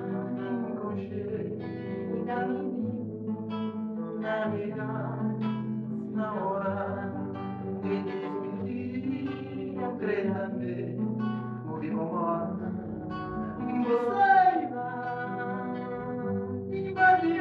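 Live Cape Verdean morna: a woman singing long, bending notes to a man's acoustic guitar, plucked and strummed under her voice throughout. The singing swells loudest near the end.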